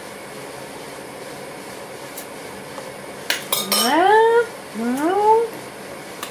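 A low steady background for about three seconds, then a few sharp clinks of a metal spoon against the steel pan as the pudding is tasted. Two drawn-out rising vocal sounds follow: a long "maar" and a rising hum of tasting.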